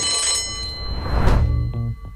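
A bell-like chime sound effect rings out as the on-screen countdown reaches zero, marking the end of the round. Several high ringing tones hold and slowly fade, with a swelling whoosh that peaks just past the middle.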